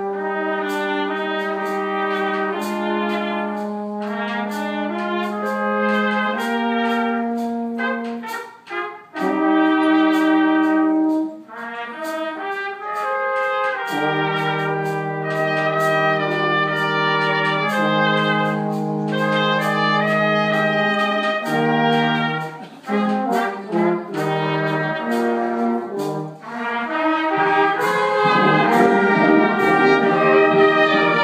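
Brass band of trumpets, trombones and tubas playing held chords, with a few short breaks between phrases, growing louder and fuller near the end.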